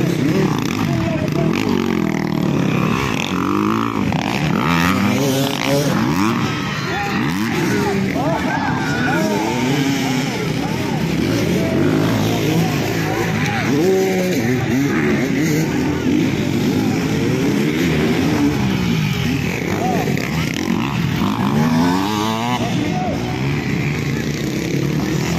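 Several motocross dirt-bike engines revving hard over a dirt track, their pitch rising and falling again and again as the riders open and close the throttle over the jumps, with more than one bike heard at once.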